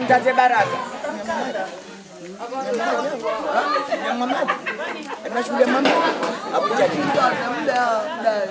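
Several people talking at once in overlapping chatter, with a woman's voice among them.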